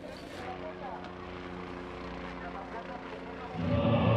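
A steady mechanical drone holding several fixed pitches, under faint background voices; music comes in near the end.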